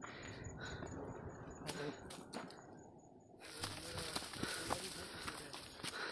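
Footsteps and rustling while walking a dry, grassy dirt trail, briefly quieter about three seconds in, then a louder rushing hiss for the second half.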